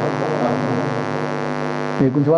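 A man's voice holding one long, steady sung note at an unchanging pitch, drawn out between phrases of a religious sermon.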